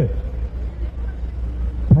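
Steady low rumble of outdoor background noise, with no speech.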